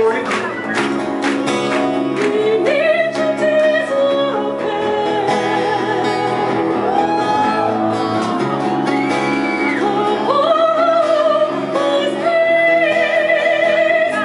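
Live acoustic band music: a woman singing long held notes with vibrato, sliding between pitches, over strummed acoustic guitar.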